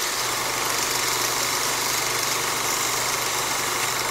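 Film projector running: a steady mechanical whir with hiss and a constant low hum, starting suddenly and holding an even level.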